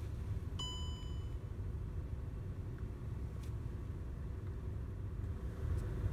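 Car engine idling, heard from inside the cabin as a low steady rumble. About half a second in, a short electronic chime rings for under a second.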